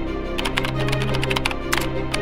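Background music with a sustained low chord, overlaid by a keyboard-typing sound effect: irregular keystroke clicks, a few per second.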